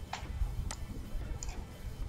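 Computer mouse clicking, about three sharp clicks spread over two seconds, over a low steady background hum.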